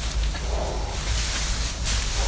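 A foal shifting about on straw bedding: rustling straw and scuffing hooves, over a low steady rumble, with a brief louder scuff near the end.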